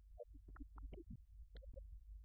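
Near silence: room tone with a steady low hum and a few faint clicks and knocks.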